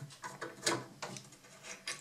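Screwdriver turning out the screw of a door's pintle hinge, a few faint scrapes and clicks of the blade working in the screw head.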